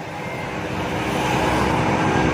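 A steady noisy rumble, with no speech in it, that grows gradually louder.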